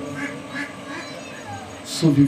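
A man's voice over a public-address system, soft and trailing off between loud chanted phrases of an Arabic supplication, with faint voice sounds after it.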